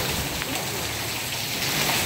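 Heavy, wind-driven rain pouring down and pattering on the canopy and pool deck in a violent storm, a steady rushing hiss.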